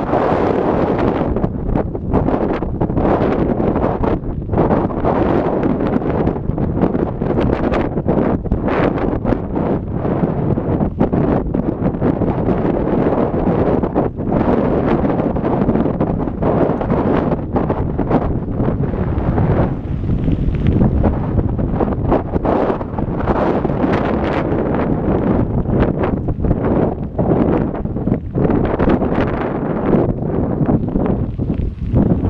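Wind buffeting the microphone of a camera riding on a moving mountain bike, a loud steady rumble broken by frequent short irregular jolts from the rough dirt track.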